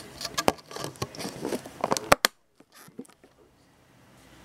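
Clicks and taps of a small clear plastic sling container being handled, ending with two sharp snaps a little over two seconds in.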